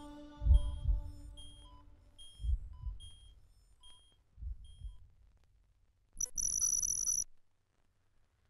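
Slow heartbeat thumps, each a double beat, growing weaker and further apart, with short high electronic beeps over them. Near the end a shrill steady electronic tone sounds for about a second and cuts off suddenly.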